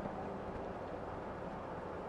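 Faint, steady low background rumble with a faint hum; no distinct sound event.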